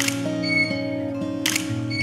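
Background music with sustained notes, over which a camera shutter fires twice: once at the start and again about a second and a half in.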